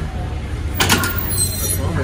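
Cable crossover machine clanking: a quick cluster of metallic clicks about a second in, as the weight stack is let down at the end of a set of cable flys, over a steady low background hum.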